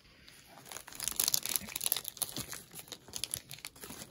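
Crinkling of foil booster-pack wrappers and plastic card packaging being handled. It is quiet for about a second, then a dense run of sharp crackles follows.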